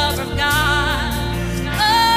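A woman sings the lead of a gospel worship song into a microphone over a live band with a steady bass line. A new held note starts near the end.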